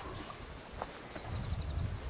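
A small bird singing: a high falling whistle about a second in, then a quick trill of about six short notes, over a low outdoor rumble.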